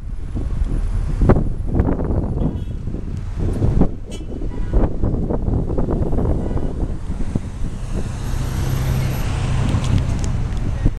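Road traffic and the tour bus's own engine heard from its open top deck, a steady low rumble; the engine drone grows steadier and stronger near the end.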